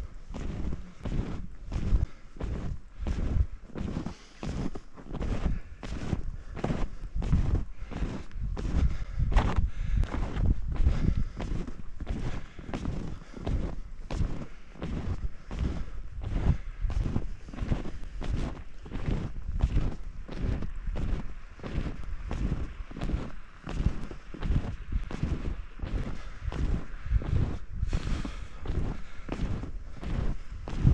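Snowshoe footsteps crunching and thudding on packed snow at a steady walking rhythm.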